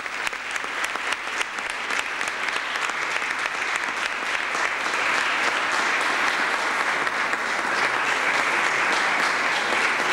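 Audience applauding: scattered distinct claps at first that thicken into steadily louder, continuous applause.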